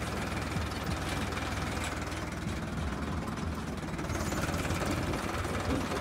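Diesel tractor engine idling steadily, with an even low beat.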